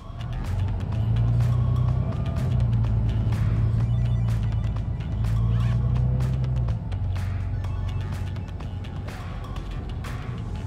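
Music plays over the low drone of a city bus's engine pulling under load, which eases off about seven seconds in, with light rattles from the bus.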